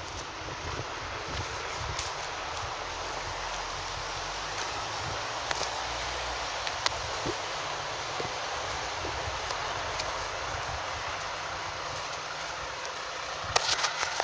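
Steady street noise of wind and road traffic beside a road, with a few sharp clicks scattered through it and a cluster of louder ones near the end.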